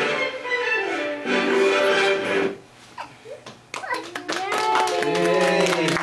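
Young children singing a Christmas song, which ends about two and a half seconds in; after a short pause, clapping and children's voices.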